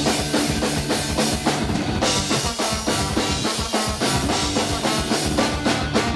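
Live ska-punk band playing an instrumental passage with no vocals: drum kit keeping a steady, driving beat under electric bass, with the trombone joining near the end.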